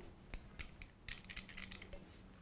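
Faint, scattered light clicks and clinks as a bicycle pedal and a grease tube are handled while the pedal spindle is greased.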